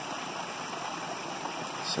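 Steady rushing of a small woodland stream and waterfall.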